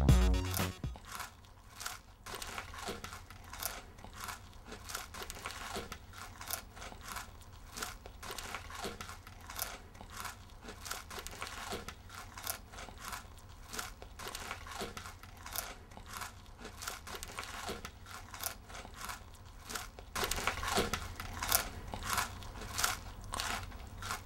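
A person munching crunchy food with the mouth open: a long run of irregular, crisp crunches over a low room hum, called "kind of loud" and growing louder in the last few seconds.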